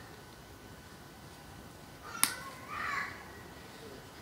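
Faint room tone, then a single sharp plastic click a little past halfway, followed by a brief rustle: the cap of a plastic squeeze tube being opened and its seal worked off.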